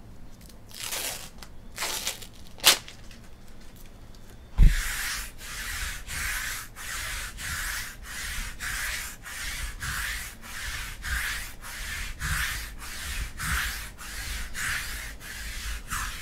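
Trading cards sliding against each other as a stack is worked through one card at a time, a regular swish about twice a second. Before that come a few separate swishes, a sharp click and a thump about four and a half seconds in.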